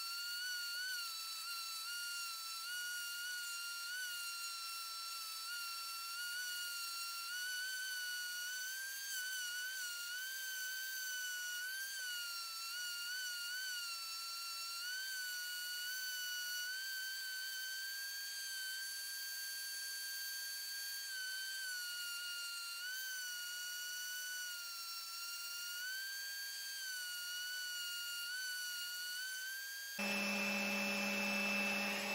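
Random orbital sander running with a steady high-pitched whine, its pitch dipping and rising slightly as it is pressed into a painted wooden strip, sanding latex paint off to bare wood.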